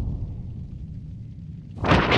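Animation sound effect: a low rumble, then a sudden loud rushing whoosh near the end.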